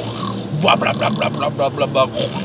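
A man making a quick run of rhythmic, wordless vocal noises in imitation of dubstep, about five a second, over the steady low drone of the car cabin.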